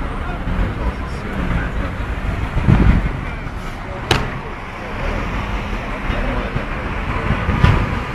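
Continuous vehicle and road noise with a heavy low rumble. A thump comes about three seconds in, and a sharp click about a second later.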